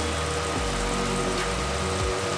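Steady sizzle of chopped ridge gourd cooking in a nonstick kadai over a gas flame, with a faint steady hum beneath it.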